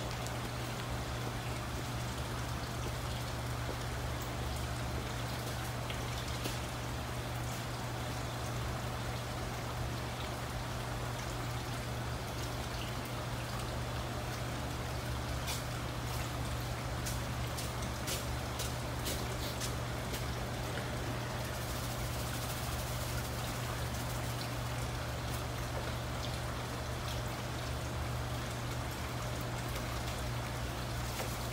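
Steady trickling of running water over a constant low hum, typical of a greenhouse hydroponic system's circulating pump and water flow. A few faint clicks come about halfway through.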